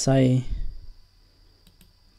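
Computer mouse clicking faintly, twice in quick succession near the end, after a short spoken word.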